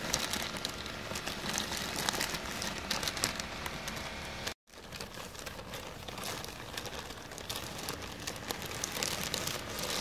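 A clear plastic bag crinkling as dried chuanxiong herb is shaken out of it, with the dry herb rustling as it falls into a stainless steel pot. The sound is a dense, steady crackle that cuts out briefly about halfway through.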